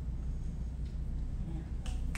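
Audience finger snapping in appreciation after a poem is read: a faint snap about a second in and a few sharper snaps near the end, over a low steady hum from the room or sound system.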